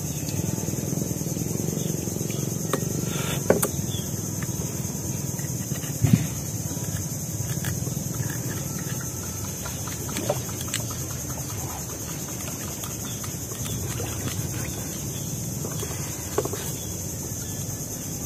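A knife blade clicking and scraping against blood clam shells a few times as they are pried open, over a steady high-pitched insect chorus and a low steady rumble.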